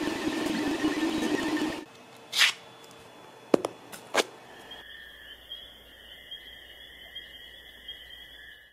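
Ender 3D printer running, its motors giving a steady hum and whine that cuts off abruptly a little under two seconds in. Then a few sharp clicks as a printed plastic part is handled and pressed down on paper, followed by a faint, steady high-pitched whine.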